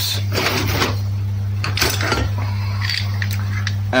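Metal tools clinking and scraping as a gear puller is picked out of a pile of loose tools and parts, in several short clatters over a steady low hum.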